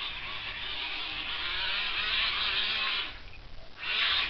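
Homemade RC jet boat under power, its Atomic Stock R 130-size electric motor whirring and the brass jet drive spraying water. It builds up, cuts off suddenly about three seconds in, then gives a short burst near the end.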